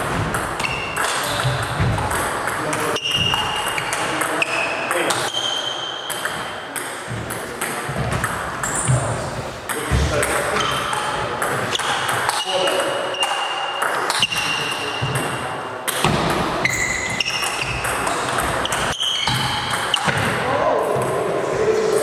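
Table tennis rallies: the plastic ball clicking off the bats and bouncing on the table, in quick repeated hits.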